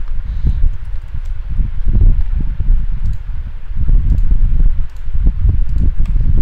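Typing on a computer keyboard with mouse clicks, the keystrokes coming through as dull, uneven thumps over a steady low rumble.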